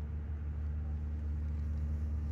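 A steady low hum with a few even, buzzy tones, constant in level throughout.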